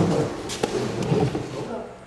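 Cordless drill driving a screw into the wall to fasten a clip for the air-line tubing, with a couple of sharp clicks about half a second in.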